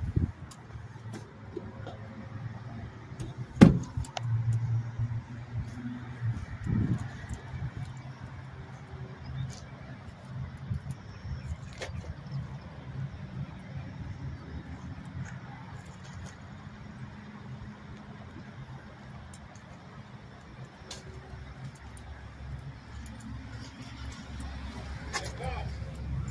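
A pickup truck's engine idling with a steady low hum, with a sharp click about four seconds in and a few lighter knocks just after.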